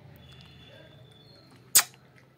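A cat lapping milk from a bowl, faint, with one loud, sharp click about three-quarters of the way in.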